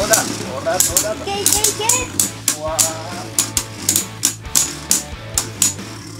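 Two Beyblade Burst spinning tops clashing as they spin against each other in a plastic stadium: a run of sharp clicks, irregular at first and then about two to three a second.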